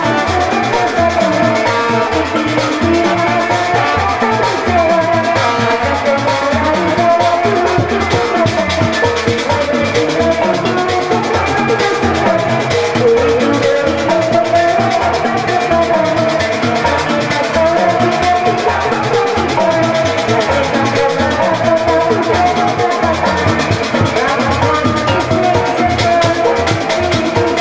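Live Sundanese Kuda Renggong music played loud through a sound system: a woman sings into a microphone over a steady drum beat and melodic instrumental accompaniment, with no break.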